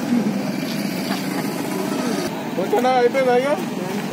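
Bystanders' voices over steady road-traffic noise, with one voice raised and clearly heard near the end.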